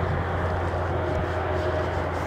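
Steady low rumble of an approaching passenger train led by two VIA Rail F40PH-2 diesel locomotives.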